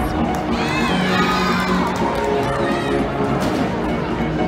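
Crowd in a large echoing gymnastics hall: spectators and young gymnasts cheering and shouting over music playing in the background, the shouts strongest in the first second or so.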